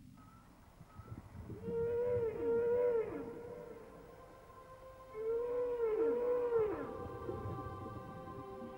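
Recorded whale song: long, moaning calls that arch up and fall away in pitch, in two groups of overlapping calls about a second and a half and five seconds in.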